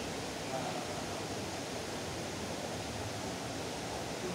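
Steady rushing hiss of aquarium aeration and filtration: air bubbling up through the tank water.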